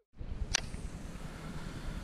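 Wind rumbling unevenly on an outdoor action-camera microphone, with one sharp click about half a second in.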